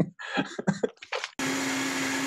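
Countertop blender switched on about one and a half seconds in, blending fruit for a smoothie: a steady motor hum under a dense whirring noise.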